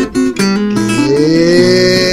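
Trova song: acoustic guitar being played, with a voice holding one long note that slides up in pitch about a second in and then stays steady.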